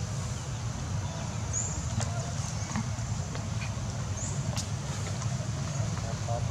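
Forest background with a steady high insect drone and a constant low rumble. A short high rising call sounds twice, and a few sharp clicks come through.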